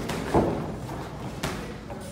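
Punches landing in boxing sparring: a few dull gloved thuds, the loudest about half a second in and another about a second later.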